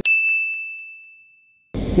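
A single bell-like ding sound effect: one clear high tone struck sharply, fading away over about a second and a half and dropping into silence.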